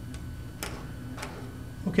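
Three short, sharp clicks about half a second apart over a low steady hum.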